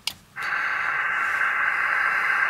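Xiegu X6100 HF transceiver dropping back to receive after a transmission: a short click, a brief gap, then the steady hiss of an open single-sideband channel from its speaker, thin and cut off above and below like a telephone line.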